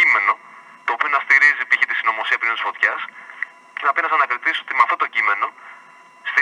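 Speech only: a voice talking in a radio broadcast, in three stretches with short pauses between them.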